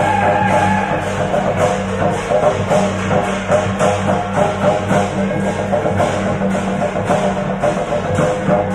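Temple procession music: drums and percussion beating a steady rhythm under a melody of held notes.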